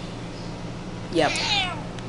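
A domestic cat meowing once, about a second in, one call whose pitch rises and then falls.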